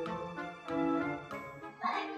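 Light background music: tinkling, bell-like notes struck at an even pace over a low held bass tone.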